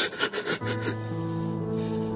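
Background drama score: a sustained low chord of held notes comes in about half a second in, after a few short rough strokes at the start.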